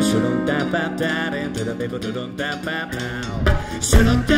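Live acoustic band music: strummed acoustic guitar under a sung male vocal line. Just before the end a loud percussion hit comes in and the band sounds fuller.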